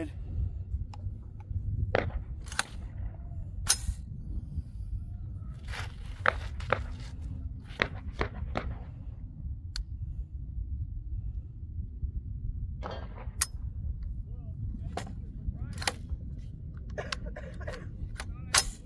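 Wind rumbling on the microphone, with about a dozen short, sharp cracks scattered through it. The AR-47 rifle does not fire because its magazine is not fully seated.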